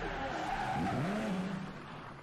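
Car engine revving up and down with tyres squealing as the car drifts, fading out near the end.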